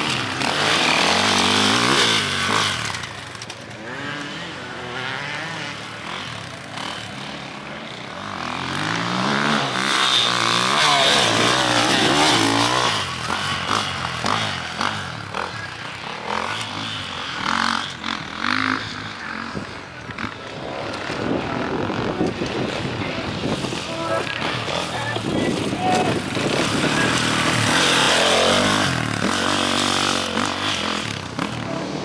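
An enduro dirt bike's engine revving hard and falling back again and again as the rider accelerates and shifts along the course. It is loudest about two seconds in, around ten to twelve seconds, and again near the end.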